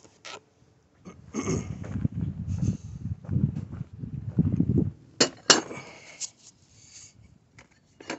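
Footsteps walking across grass and mulch, with the phone being handled, followed about five seconds in by a few sharp metal clinks as steel parts knock together.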